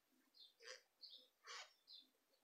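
Near silence with a few faint, brief scratches from a crochet hook drawing doubled wool yarn through a stitch.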